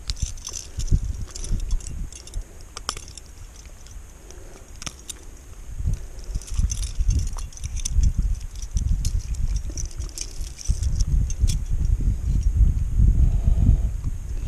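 Metal fish-stringer chain and pliers clinking and jingling in the hands as a bass is unclipped for release, giving many small irregular clicks. An irregular low rumble grows louder in the second half.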